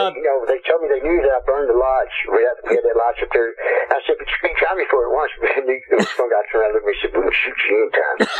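Continuous speech: a person talking without pause, the voice thin and narrow in range.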